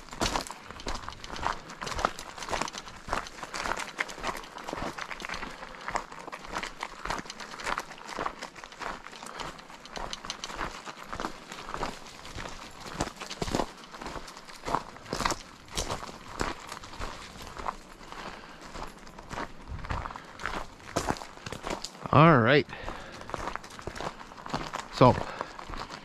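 Steady, irregular crunching of gravel as the trail is travelled along. A brief pitched, wavering voice sound comes in about three-quarters of the way through and again just before the end.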